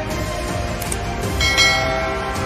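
Outro background music, with a bright bell-like chime about one and a half seconds in: the notification-bell sound effect of a subscribe-button end-screen animation.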